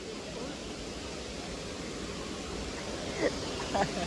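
Steady rushing of a nearby waterfall, with faint voices briefly near the end.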